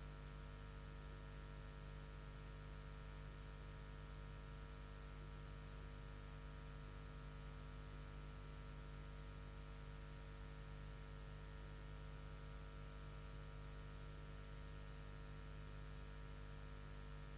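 Steady electrical hum with many fixed tones over a faint hiss, unchanging throughout.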